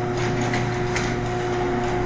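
A steady mechanical hum holding a fixed pitch, with a few faint clicks in the first second.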